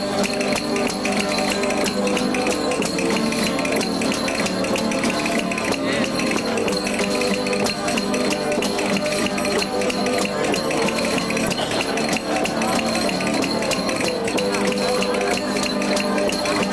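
Traditional jota played by a street rondalla: guitars strummed in a steady rhythm with a tambourine tapped and shaken, its jingles rattling on every beat.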